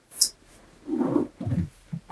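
A man's two short low grunts as he settles his weight into a gaming chair, with a brief hiss just before them.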